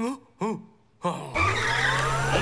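Cartoon sound effect of a Segway-style two-wheeled personal transporter taking off a little over a second in: a skidding screech over a steady low hum and a rising whine. It is preceded by two short vocal grunts.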